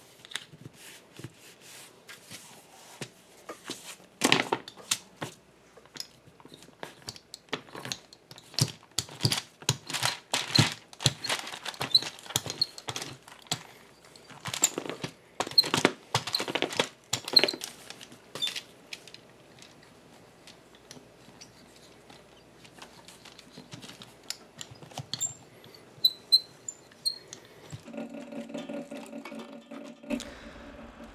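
Hands working leather on kraft paper: irregular taps, rubs and crinkles as a glued leather lining is pressed and rolled down onto the holster with a hand roller, busiest in the first half. A steady low hum sets in near the end.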